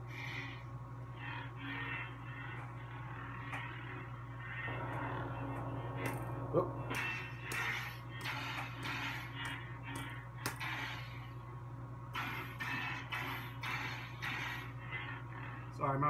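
Custom lightsaber's Verso sound board playing a steady low blade hum through the hilt speaker, with smoothswing swing sounds swelling and fading as the blade is moved. Partway through comes a sudden louder hit, a clash effect.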